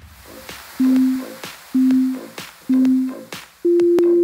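Workout interval timer counting down: three short beeps about a second apart, then a longer, higher beep near the end that marks the end of the exercise interval and the switch to the next exercise.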